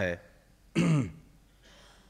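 A man clears his throat once into a podium microphone, a short sound falling in pitch just under a second in; the rest is quiet room tone.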